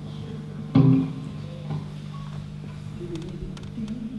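Electric guitar struck once about a second in, the chord ringing out and fading, with a few quieter notes later. A steady low amplifier hum runs underneath.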